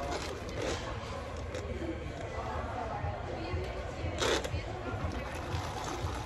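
Café room noise: faint background voices over a steady low hum, with one short sharp noise about four seconds in.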